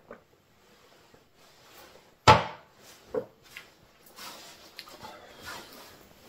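A drinking glass set down on a kitchen counter with one sharp knock about two seconds in, then a lighter knock about a second later and faint clicks and rustles of handling.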